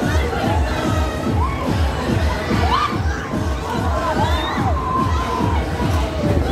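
Riders screaming and shouting on a spinning fairground thrill ride, over loud fairground dance music with a steady heavy beat about twice a second.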